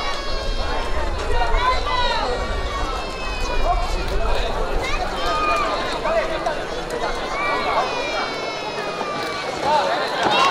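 Several voices shouting and calling out over one another, with a low rumble underneath during the first half.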